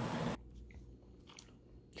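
Steady hiss from the video's playback that cuts off suddenly about a third of a second in. Low room noise with a few faint clicks follows.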